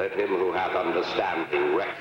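A person's voice speaking, with words that can't be made out.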